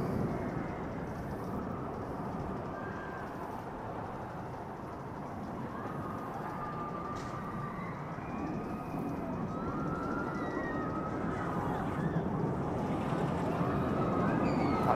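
Twisted Colossus roller coaster trains running on the track: a steady rumble that slowly grows louder, with faint rising and falling screams from riders.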